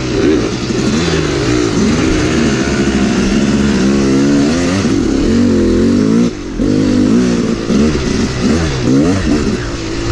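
Yamaha YZ250 two-stroke dirt bike engine ridden hard, revving up and down with the throttle so its pitch keeps rising and falling. A brief drop in level comes a little past six seconds in, as the throttle is briefly closed.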